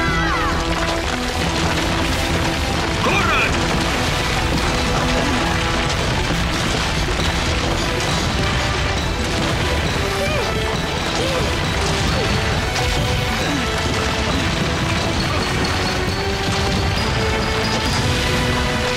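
Cartoon rockslide sound effects: falling rocks crashing and rumbling without a break under background music. There are a couple of short vocal cries, one right at the start and one about three seconds in.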